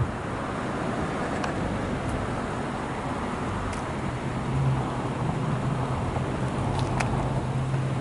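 Steady road traffic and engine noise, with a low steady hum that grows stronger from about halfway through, and a few faint ticks.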